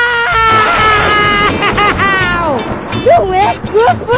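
A person's voice holding one note, then sliding down in pitch in one long falling call, followed by short rising-and-falling vocal sounds, with music underneath.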